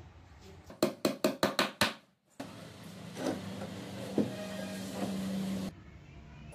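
A rapid run of about six sharp knocks on a plywood table top, about five a second, as it is worked into place on its plywood frame. After a short break, a steady low hum with background noise follows.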